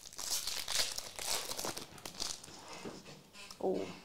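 Foil trading-card pack wrapper crinkling as it is torn open and the cards are pulled out, in a run of irregular crackles that thin out near the end.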